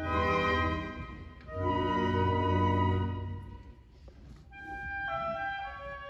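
Concert band playing: two loud full-band chords with heavy low brass, each held a second or two, then a softer passage of sustained high woodwind notes moving in steps.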